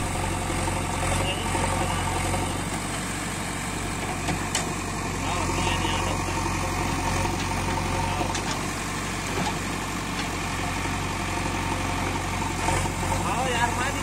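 JCB backhoe loader's diesel engine running steadily as the backhoe arm digs soil, a constant low hum.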